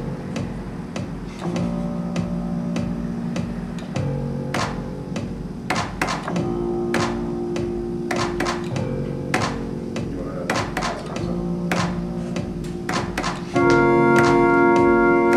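Electronic music played live from a homemade controller through software instruments: held synth notes change every couple of seconds over a steady drum-machine beat of sharp hits. A louder, organ-like chord comes in near the end.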